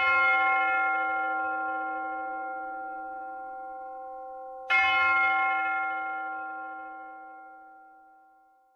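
A deep bell struck twice, about five seconds apart. Each stroke rings out with several overtones and fades slowly.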